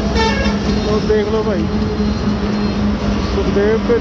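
Roadside ambience by a busy highway: steady traffic noise with a constant low hum, and people talking in the background.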